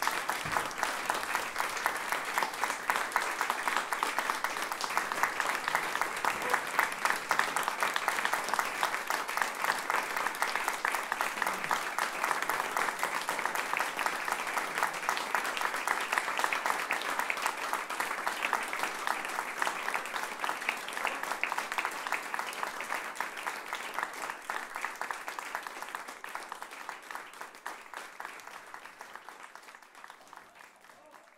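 Audience applauding: many hands clapping in a dense, steady stream that fades away near the end.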